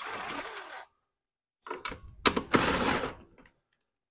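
Cordless power driver running in two short bursts, one at the start and a longer one from about two seconds in, as it spins out the bolts holding the recoil starter and shroud on a Honda GCV160 mower engine.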